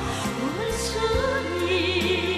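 Song playing: a singer holding long notes with vibrato over instrumental accompaniment.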